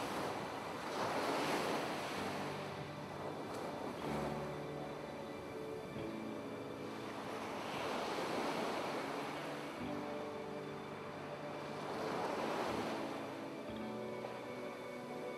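Ocean waves washing in and receding, swelling about every four seconds, over soft background music with slow held notes.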